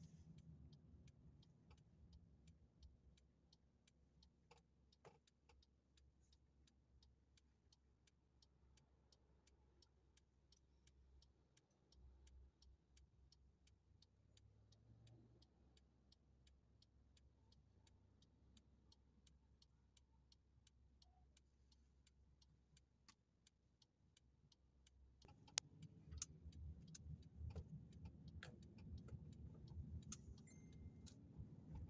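Faint low road rumble inside a car's cabin under a steady, evenly spaced ticking. The rumble is softest through the middle and grows louder in the last few seconds as the car picks up speed.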